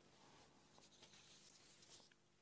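Near silence: a faint steady hiss with a low hum.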